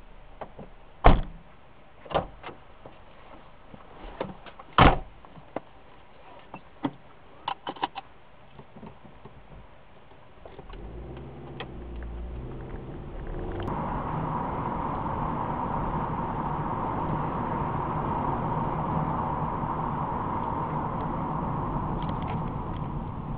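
Inside a car: a scattering of sharp clicks and knocks, then about ten seconds in a low rumble starts and builds into steady car running noise.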